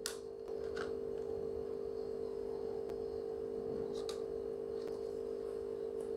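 A steady low hum with a few faint, light clicks as cardboard lids are set onto foil food containers, one right at the start, one about a second in and one about four seconds in.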